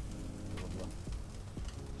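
Whole mackerel sizzling on the bars of a charcoal grill, a steady crackling hiss with a few faint clicks, under quiet background music.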